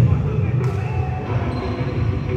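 A basketball bouncing on an indoor court floor, with voices around it.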